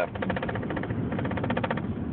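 Car engine running, heard from inside the cabin as a steady drone with a fast, even buzzing pulse through most of it.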